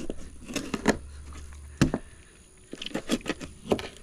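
A heavy knife cutting the head off a flounder. It gives a series of short crunches and taps as the blade works through the fish and knocks on the cutting board: one sharp tap near the middle and a quick cluster near the end.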